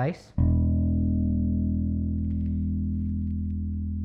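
A single long note on an active electric bass through a Laney RB3 bass combo amp, plucked about half a second in and left to ring, fading slowly. The amp's gain is set at its sweet spot, about 5 or 6, where the note sounds full and strong.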